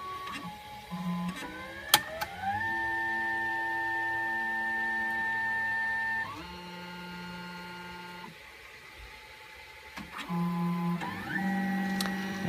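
Stepper motors of an XYZprinting Da Vinci Duo 3D printer moving the print head during its homing and nozzle-cleaning moves before printing. Each move is a pitched whine that glides up in pitch as the motor speeds up, then holds a steady note for a few seconds. There is a sharp click about two seconds in, a quieter lull around nine seconds, and short moves with another rising whine near the end.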